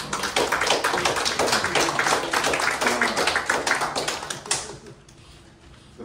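A small group applauding for about five seconds, the clapping thinning out and stopping shortly before the end.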